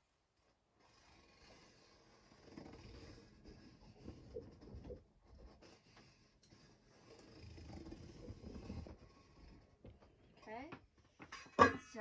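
Faint scratching and rubbing of a pencil tracing around a metal pot lid on cardboard. It comes in two stretches with a short pause between them. A voice begins just at the end.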